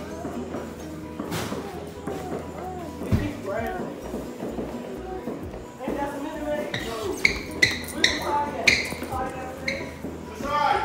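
Indistinct voices and music in the background, with a quick run of short, bright pings or clinks in the last few seconds.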